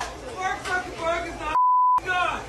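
A man shouting angrily, cut off near the end by a single steady high beep of about half a second with all other sound muted: a censor bleep covering a swear word.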